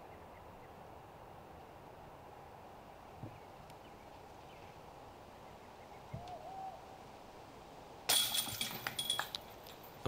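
Quiet outdoor ambience with a faint bird call about six seconds in. Near the end, a loud metallic jangle lasting about a second and a half: a putted disc hitting the chains of a disc golf basket.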